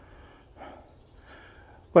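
A pause in a man's talking, with only faint sounds in it; his voice starts again at the very end.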